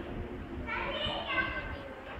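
A child's high-pitched voice for about a second in the middle, over the murmur of other voices in a large hall.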